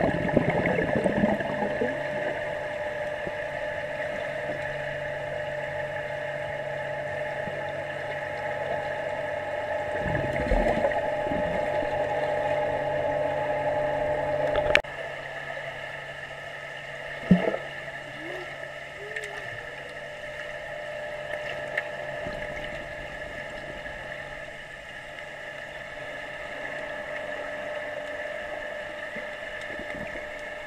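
Underwater sound of a swimming pool picked up by an action camera: a steady mechanical hum with bubbling and splashing at the start and again about ten seconds in. A sharp click about halfway through is followed by a drop in level, and there is another sharp knock a couple of seconds later.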